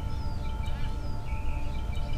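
Birds chirping in short calls over a steady low outdoor rumble, with a soft sustained note of background music underneath.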